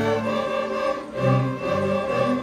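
A student string orchestra plays sustained bowed notes on violins, cellos and double bass. The music dips briefly about a second in, then lower notes enter.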